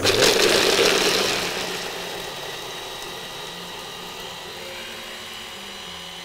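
Electric stick blender with its chopper bowl grinding hazelnuts with a little oil into a paste. The motor whirs loudly for the first couple of seconds, then settles into a quieter, steady hum.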